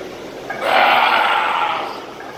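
A man's long, strained yell of effort while squatting under a loaded barbell, starting about half a second in and lasting over a second.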